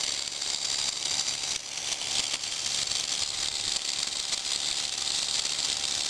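Wig-wag flasher motor from a 1958 Cadillac ambulance, freshly rewound, running steadily with a whir. Its worm gear drives the cam that rocks the two contact arms back and forth.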